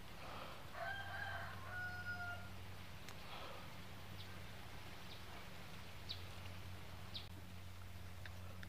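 A faint rooster crowing once, a single drawn-out call about a second in that drops slightly in pitch in its second half, over a steady low hum.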